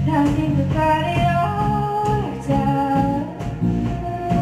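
A live band plays a pop-rock song on drums and electric guitar. A melody moves in held notes over a steady bass line.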